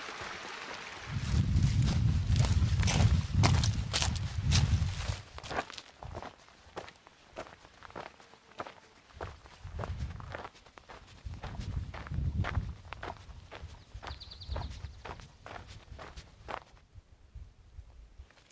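A hiker's footsteps on a rocky dirt trail, about two steps a second, with two stretches of low rumble on the microphone.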